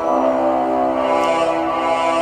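Film trailer's orchestral score: a sustained chord of many held notes.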